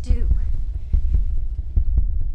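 Deep bass beat thudding about once a second, heartbeat-like, from an edited soundtrack, with a brief voice at the very start.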